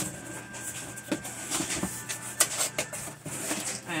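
Scattered rustles and light knocks of items and packaging being handled while someone rummages in a box.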